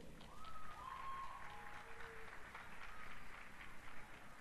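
Audience applauding, a dense patter of many hands clapping, with a brief high drawn-out call from the crowd over it in the first two seconds.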